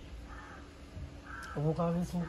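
A bird calling a few times in the background, with a low human voice sounding briefly near the end.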